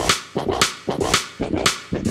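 Sharp percussive hits in a steady rhythm, about three to four a second, each dying away quickly: a percussion intro to a music track.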